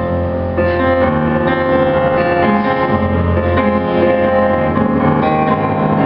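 Grand piano played live: slow chords held over low bass notes, without singing.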